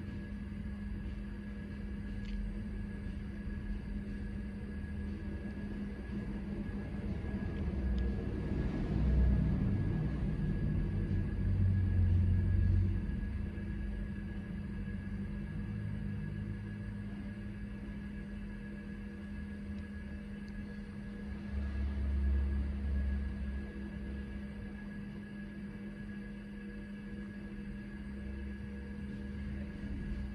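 Steady electrical and mechanical hum from an Apple Lisa-1 computer and its ProFile hard drive, still running while the Lisa shuts down. Two stretches of low rumble come in, one about a third of the way in and one about two thirds in.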